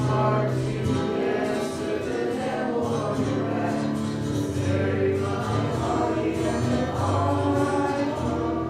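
A choir sings a hymn in long held notes over a steady low accompaniment.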